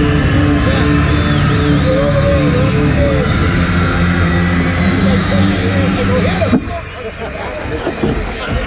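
Music over an arena's public-address system, with held notes and a crowd talking underneath. The music cuts off abruptly about six and a half seconds in, leaving crowd chatter.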